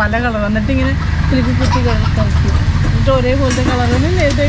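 A woman talking in a steady run of speech, over a continuous low rumble.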